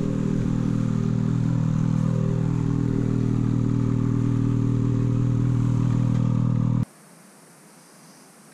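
Two-stroke snowmobile engine, a Ski-Doo Summit's 800 E-TEC twin with an MBRP aftermarket can, idling steadily at a constant pitch; the sound stops suddenly near the end.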